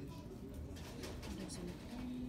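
Faint background voices murmuring, with a few light clicks from a clear plastic dessert tub being handled and turned over.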